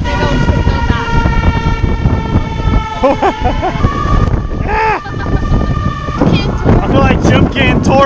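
A vehicle horn sounds one long, steady note for about four seconds, and a single steady horn tone carries on to about six seconds in. Strong wind buffets the microphone throughout.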